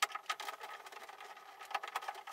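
Small electric screwdriver running, undoing a screw from the TV's plastic back cover, with a steady motor whine and rapid ticking.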